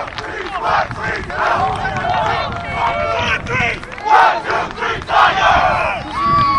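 Many voices shouting and yelling at once in a loud group cheer.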